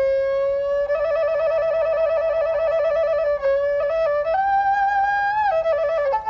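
Background music: a solo flute melody playing a long held note, then a fast warbling trill, then a higher held note.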